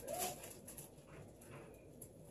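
A short, soft hummed 'mm' from a person at the start, rising then falling in pitch, followed by faint room noise.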